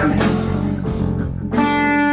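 Instrumental improvised avant-jazz with electric guitar over bass and drums; the playing thins out, and about one and a half seconds in a held chord comes in.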